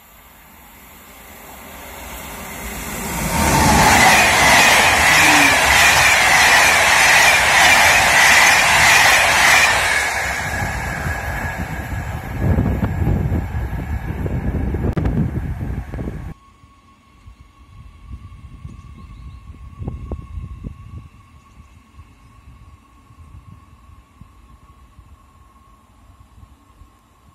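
A train approaching and passing close by: it grows louder over the first few seconds, stays loud for about six seconds with a high whine and rail clatter, then falls away. The sound cuts off abruptly about sixteen seconds in, leaving a much quieter steady thin tone with faint rumbles.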